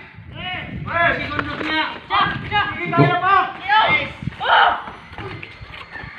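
People talking and calling out in short phrases, one after another.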